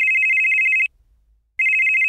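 Telephone ringing: a high, trilling two-tone ring, heard as two rings of about a second each with a short pause between them.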